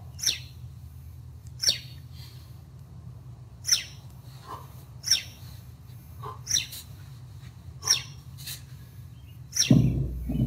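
A small bird chirps one short, sharp note about every one and a half seconds over a steady low hum. Near the end comes a louder thump as the kettlebell is set down on the concrete floor.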